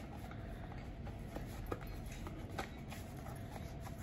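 Faint handling of a small rigid cardboard box turned over in the hands: a few soft, scattered clicks and taps over a low steady background rumble.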